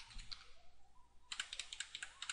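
Faint typing on a computer keyboard: a few keystrokes, a short pause, then a quick run of key presses near the end.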